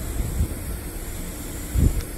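Wind buffeting a phone's microphone on an exposed rooftop, a steady low rumble with one louder buffet near the end.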